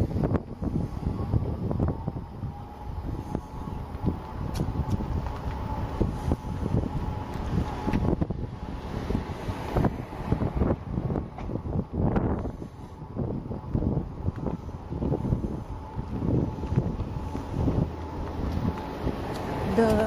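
Wind buffeting the microphone of a camera mounted on a slowly moving ride, an irregular gusty low rumble with rattly flutter throughout.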